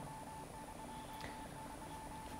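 Quiet studio room tone in a pause between speakers, with a faint steady tone and low hum running underneath.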